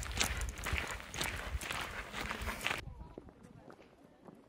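Footsteps of a person walking, a run of irregular short steps. The sound drops off sharply about three seconds in, leaving only faint ticks.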